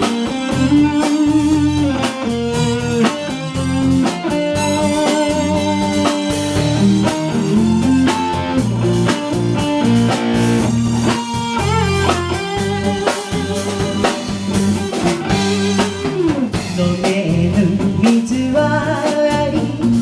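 Live band playing an instrumental passage of a song, with a steady drum beat under it; the singer's voice comes back in near the end.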